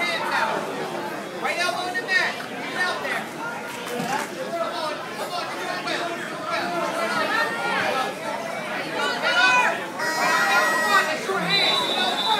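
Spectators and coaches talking and calling out at once, many overlapping voices of a crowd in a large hall. A brief high steady tone sounds twice near the end.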